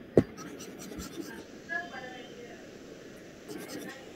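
A short knock just after the start, then a faint, low voice over a video call, with a few light ticks near the end.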